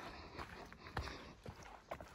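Footsteps on a dirt forest trail: four faint footfalls about half a second apart.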